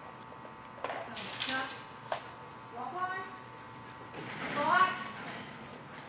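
Indistinct voices calling out in a large, echoing hall, loudest near the end, with three sharp knocks in the first couple of seconds.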